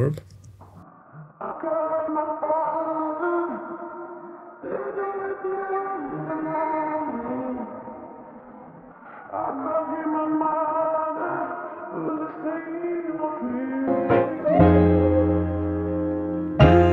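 A processed vocal sample playing back in a DAW: a sung line in long held phrases, filtered and degraded with a reduced sample rate and reverb. Near the end a deep bass comes in underneath.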